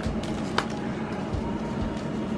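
Steady low room hum with a single short click about half a second in, as a stack of freshly opened trading cards is handled.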